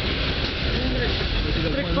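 Steady rumble and rush of a regional passenger train running along the line, heard from inside the carriage, with voices talking underneath.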